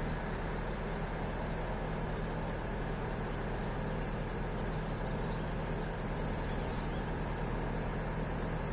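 Idling diesel truck engine: a steady low hum over a constant wash of traffic noise.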